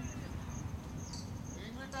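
Insects chirping in a rapid series of short, high-pitched pulses at one steady pitch, over a low outdoor rumble, with faint distant voices calling in the second half.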